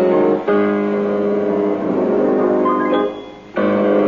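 Piano played solo, a tune in full chords, with a short break a little after three seconds before the playing picks up again.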